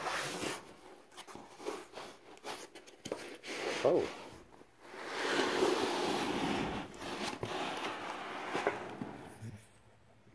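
Cardboard box and a sheet of white packing foam being handled: scattered rustles, scrapes and knocks, with a longer, louder rubbing slide from about five to seven seconds in as the foam is pulled against the cardboard.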